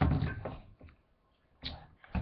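Handling noise as a toy helicopter's remote controller is picked up: a dull bump and rustle at the start, then a short click about a second and a half in.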